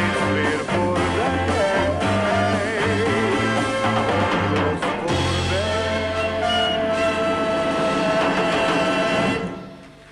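Male singer with a live orchestra finishing a song: the singer holds one long final note over a sustained orchestral chord, and the music stops just before the end.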